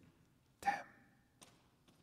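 A man speaking one soft, breathy word, then a pause of quiet room tone with a faint click.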